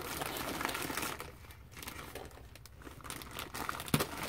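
Plastic poly mailer bag crinkling and rustling as it is handled and worked open, busiest in the first second, then in scattered softer rustles, with a short sharp click at the very end.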